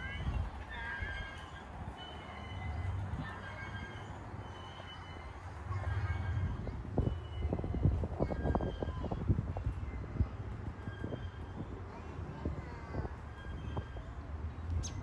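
Wind buffeting the microphone with a low rumble, gustier and louder in the second half. Short high bird chirps repeat over it about once a second.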